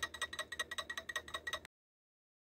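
Magnetic stirrer spinning a stir bar slowly in a glass beaker of water, making a steady light ticking of about seven or eight clicks a second. It stops abruptly near the end.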